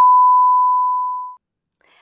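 Loud censor bleep: a single steady pure tone that tapers off and ends about a second and a half in, covering the end of a spoken sentence.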